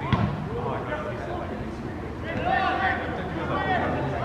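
A soccer ball kicked once just after the start, a short thump, followed from about two seconds in by players' raised voices calling out across the pitch.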